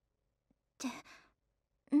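A girl's voice in short bursts of anime dialogue: a brief trailing syllable with falling pitch about a second in, and the start of another line near the end, with silence in between.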